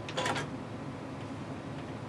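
A brief cluster of sharp clicks and a rattle just after the start, like small items being handled on a table, over a steady low room hum.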